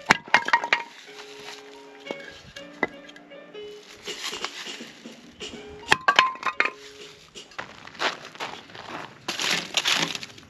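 Hatchet chopping firewood into kindling: sharp cracks and clinks of the blade biting and the wood splitting, in a cluster at the start, a single hit about three seconds in and another cluster around six seconds. Light background music plays underneath.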